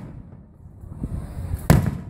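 Aerial firework shell bursting with a single loud boom near the end, followed by a brief ringing tail.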